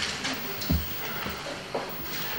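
Low background of a large meeting hall, with faint rustling of paper documents being handled and one soft low thump just under a second in.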